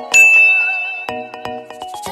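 Intro music with a single bright electronic ding that strikes just after the start and rings on, fading over about a second, over a run of short musical notes.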